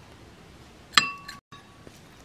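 A metal spoon clinks once against a small glass bowl while stirring a sauce, leaving a brief ringing tone that cuts off suddenly.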